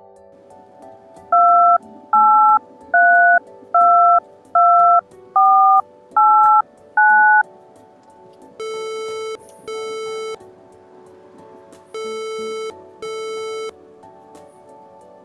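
Telephone touch-tone keypad dialing a number: eight short two-note beeps about three-quarters of a second apart. Then the ringback tone of the call ringing out, a buzzing double ring heard twice.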